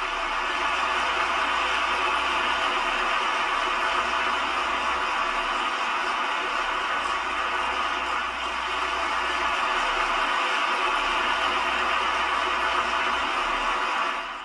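A large audience applauding in a hall: steady, even clapping that swells in at the start and holds without a break.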